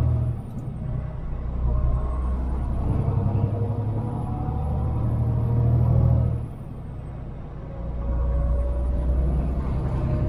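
Semi truck's diesel engine running under load while driving, easing off twice, about a quarter second in and again after six seconds, each time for about a second before pulling again. A thin high turbo whistle falls away when the engine eases off and climbs back as it pulls.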